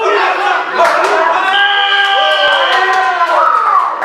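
Spectators shouting encouragement at a grappling match, several voices at once, with one voice holding a long drawn-out shout near the middle.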